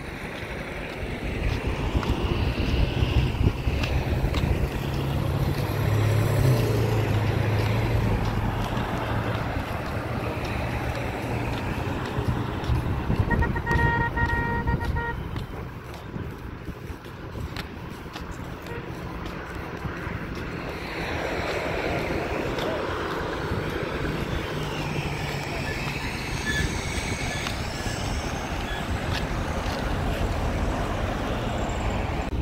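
Road traffic: vehicles passing with engines running, and a car horn sounding once, for about a second and a half, near the middle.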